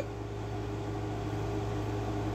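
Steady low hum over an even background hiss, with no change through the pause.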